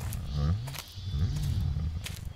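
A deep wordless voice making low groaning sounds that rise and fall in pitch, with a few sharp steps from walking boots.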